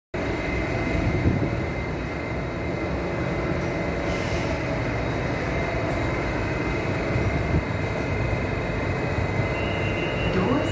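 Kawasaki–CRRC Qingdao Sifang CT251 metro train standing at a platform with its doors open: a steady hum of onboard equipment with a thin high whine running through it and a brief hiss about four seconds in. Near the end a steady high warning tone starts as the doors begin to close.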